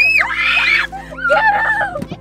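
Girls shrieking playfully in high-pitched screams, loudest in the first second, then lower squealing voices.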